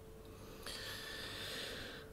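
A soft breath out through the nose, starting a little over half a second in and lasting just over a second.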